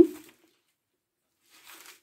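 Near silence: the end of a spoken word at the start, then nothing, then a faint short rustle near the end.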